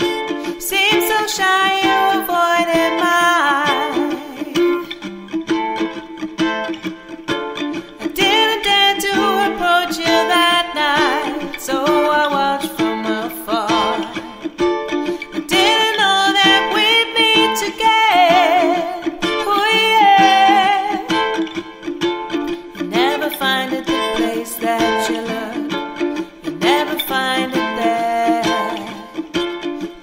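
Acoustic ukulele strummed in a reggae style while a woman sings the melody over it, with short breaks between sung lines.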